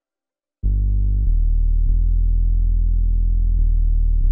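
A deep sub-bass sample ('Glorious Sub') playing one held low note, starting just over half a second in after silence and sustaining steadily.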